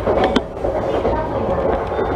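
JR Yamanote Line electric commuter train running along the track, heard from inside the front car with a steady rumble. The wheels click over the rails a few times near the start.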